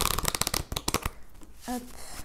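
A deck of oracle cards being shuffled by hand: a quick run of crisp card flicks that stops about a second in.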